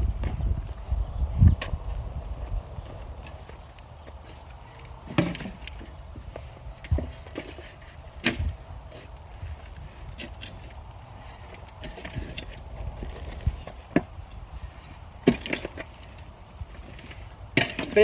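A metal spade digging into and turning a soil, compost and manure mix in a plastic wheelbarrow: irregular scrapes and knocks a second or more apart as the blade cuts in and hits the tub.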